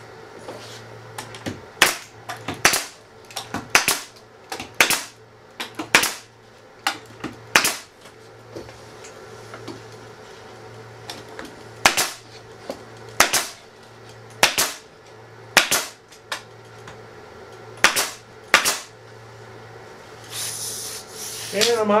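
Pneumatic nail gun firing fasteners into wooden bat-house partitions: a string of sharp shots, several a second at times, with short pauses between groups. Near the end comes a brief hiss of air, as the gun runs out of fasteners.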